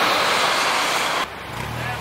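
Loud, steady rush of passing street traffic, with an articulated city bus going by close. It cuts off abruptly just over a second in, leaving a quieter, steady low engine idle hum.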